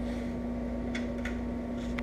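Steady shop hum with three faint, light clicks of small metal hardware as washers and a nut are fitted onto screws by hand.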